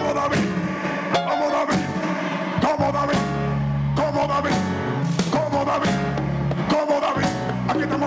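Live worship band playing with a steady beat: bass guitar, electric guitar and drum kit.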